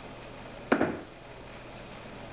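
A single short knock of something hard being handled or set down, about three-quarters of a second in, over faint room hiss. The drill is not running.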